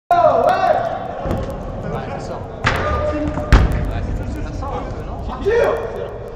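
A football being struck hard twice, about a second apart, the second thud the loudest, with players shouting.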